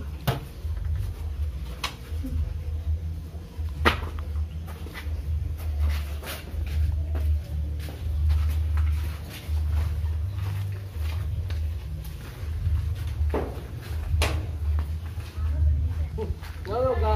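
Low, uneven rumbling on the microphone, broken by a few sharp knocks: one early, one about two seconds in, a louder one near four seconds, and two more near the end.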